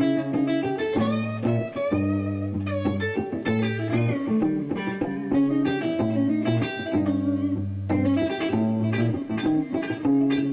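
Electric guitar playing a dark-sounding line built from the diminished scale, with low held notes repeating underneath the melody.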